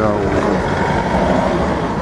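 A man's voice trailing off at the start, over steady outdoor background noise.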